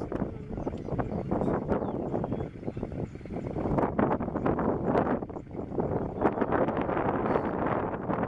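Wind buffeting the microphone: a rough noise that swells and fades, with scattered small knocks and clicks.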